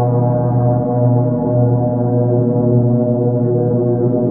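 Ambient music soundtrack: a single low drone held steady, with many sustained overtones above it.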